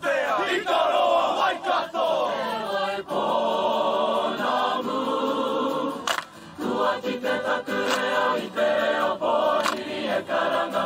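Mixed choir singing a Māori action song: voices sliding up and down in pitch for the first few seconds, then holding full chords, with sharp hand claps about six seconds in and again near the end.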